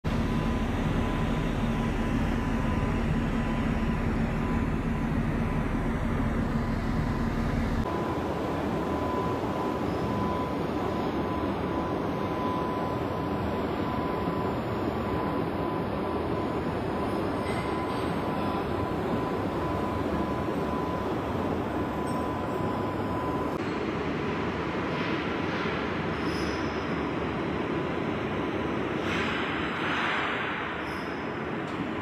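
Steady mechanical rumble and hiss with a thin steady whine, its character changing abruptly about eight seconds in and again about two-thirds of the way through.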